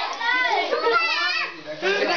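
Several children's high-pitched voices shouting and calling out over one another as they play a group game, with a brief lull about three-quarters of the way through.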